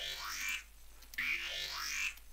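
Growl bass patch on the Native Instruments Massive software synthesizer playing two notes about a second apart, each with a rising sweep.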